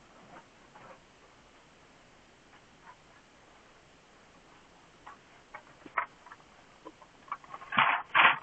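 Scattered small clicks and taps of objects being handled close to a camera lying face down, growing busier in the last few seconds and ending in a loud burst of handling noise.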